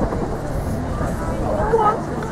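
Indistinct murmur of spectators' voices over a low, steady outdoor rumble.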